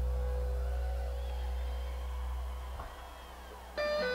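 Free-form ambient rock improvisation from a soundboard recording: a deep, sustained low bass note with faint wavering high tones above it fades out about three seconds in. Near the end, several sustained higher notes enter suddenly together.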